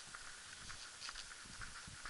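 Faint walking sounds on a pavement: soft footfalls about every half second with many small irregular clicks and ticks between them.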